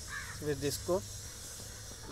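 Brief speech in Hindi over a steady low background hum.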